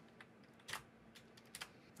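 Near silence with two faint computer clicks about a second apart, from keyboard keys or a mouse button.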